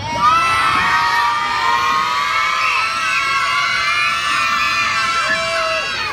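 A group of young children screaming and cheering together, starting suddenly about a quarter second in and held for several seconds before easing off near the end.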